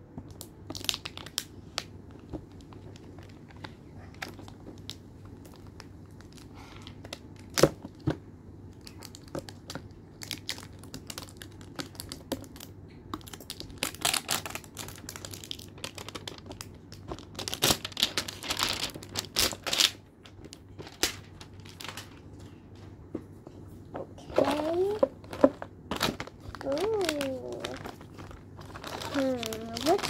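A plastic toy box being opened: scattered clicks and knocks of the plastic being handled, longer tearing and scraping sounds from peeling tape in the middle, and crinkling of foil-wrapped packets. A child's voice comes in near the end.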